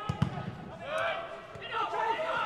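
A football struck twice in quick succession, two sharp thuds, then players shouting to each other on the pitch.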